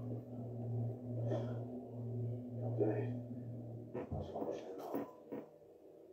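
A steady low drone with a few short, muffled voice sounds over it; the drone cuts off about four seconds in.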